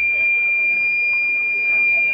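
Public-address microphone feedback: a steady, high-pitched ringing tone.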